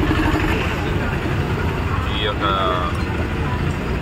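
A motor vehicle engine running steadily, a low hum under people's voices. A pulsing engine note fades out within the first second.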